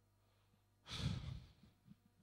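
A man's breath sighing out close into a handheld microphone: a single breathy rush about a second in, lasting about half a second.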